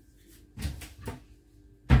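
Kitchen cabinet being opened and handled: a few short clattering knocks about half a second in, then a louder thump near the end.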